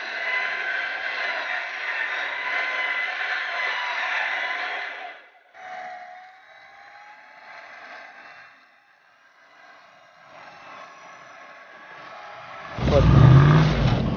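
Range Rover P38's 4.6 V8 driving the car through mud: a loud steady run of engine and drivetrain for about five seconds, picked up by an action camera mounted on the body near a wheel, then a quieter stretch. Near the end the V8 revs up, heard close and full.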